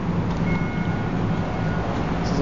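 Steady low rumble and hiss of parking-deck background noise. A faint high steady tone comes in about half a second in and lasts about a second and a half.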